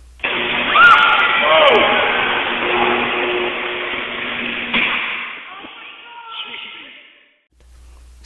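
High-voltage power line arcing through a tree as the circuit re-energizes with the fault still present: a sudden, loud crackling and buzzing electrical arc. It stays loud for several seconds, then dies away near the end.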